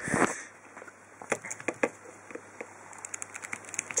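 Fingers handling a Nokia 1100's plastic body and BL-5C battery, making faint scattered clicks and small scrapes as the battery is worked out of its compartment. A short rush of noise comes at the start.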